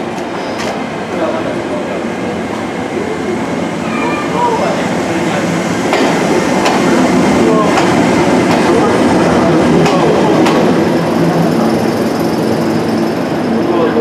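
Passenger train pulling into the station behind the Chichibu Railway Deki 201 electric locomotive, with 12-series coaches rolling close past the platform. The wheel and rail noise grows louder from about six seconds in as the coaches pass, with occasional clacks over rail joints.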